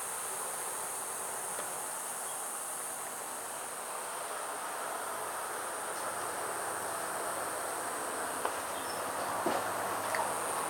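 Steady high-pitched chorus of insects, with a few light clicks near the end.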